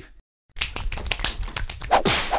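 A brief stretch of dead silence, then a quick, irregular run of small clicks and taps from a silicone stroker sleeve being handled.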